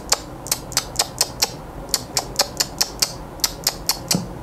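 Rapid, irregular clicking while the laptop running the mixer software is operated, about four sharp clicks a second.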